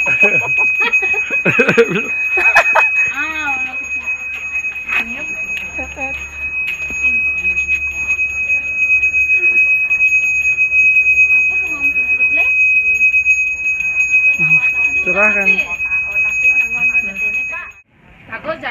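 Balinese priest's hand bell (genta) rung without pause, making one steady high ringing tone, with voices over it at times. The ringing stops suddenly near the end.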